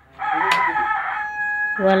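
A rooster crowing once: one long call that ends in a held note.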